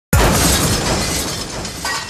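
A sudden loud crash that opens the track: a burst of noise across all pitches that fades away over about two seconds.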